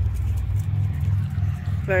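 A steady low mechanical rumble, like a motor or engine running, with a voice starting right at the end.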